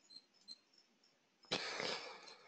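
Near-quiet room tone with a few faint ticks, then a short breath from the presenter about one and a half seconds in.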